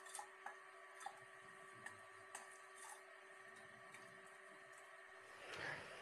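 Near silence with a faint steady hum and a few faint, scattered ticks as rice is tipped from a steel plate into an aluminium cooker pot.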